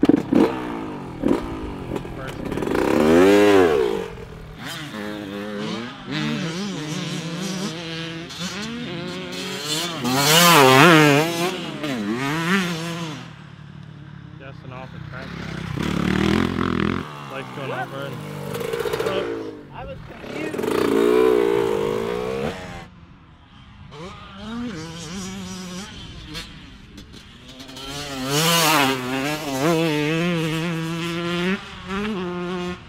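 Motocross dirt bike engines revving up and down through the gears as bikes ride past, the sound swelling and fading with each of about five passes.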